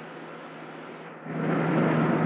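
A rushing noise with no clear tone, faint at first, swells louder a little over a second in.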